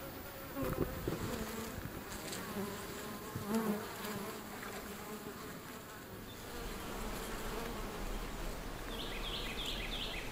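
Feral European honey bees buzzing around the microphone at their hive entrance, single bees passing close with a wavering pitch; the colony is getting agitated. After about six seconds the buzzing gives way to a low steady rumble, with a few short bird-like chirps near the end.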